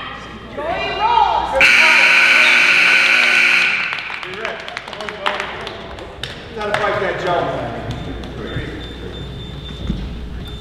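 Gym scoreboard buzzer sounding one steady blast of about two seconds, ending the wrestling period. Spectators shout and call out around it.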